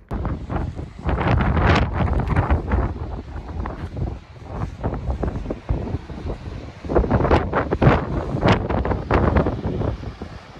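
Wind buffeting a handheld phone microphone in loud, uneven gusts. It is strongest in the first few seconds and again near the end.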